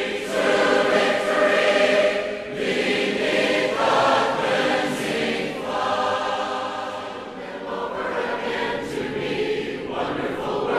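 A congregation singing a hymn together in parts, a cappella, holding long chords that change every second or two.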